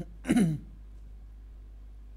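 A man clearing his throat in two short bursts, the second about a third of a second in, followed by quiet room tone with a steady low hum.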